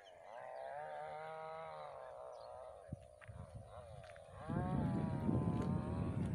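A farm animal calling twice, each a long drawn-out call like a cow lowing, the first lasting about two seconds. A second or so before the end of the first half the calls give way to a louder low rumbling noise that starts about four and a half seconds in.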